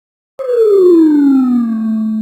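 Cartoon sound effect: a single whistle-like tone that slides steadily down in pitch. It starts about half a second in and levels off low near the end.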